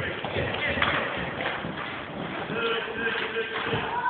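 A horse loping on the soft dirt of an indoor arena, its hoofbeats coming as dull thuds, with voices in the background.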